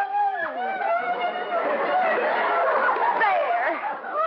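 Studio audience laughing, swelling about a second in and fading near the end.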